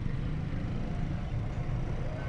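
Low, steady rumble of vehicle engines idling.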